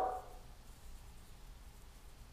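A brief, short vocal sound from a woman's voice right at the start, then quiet room tone.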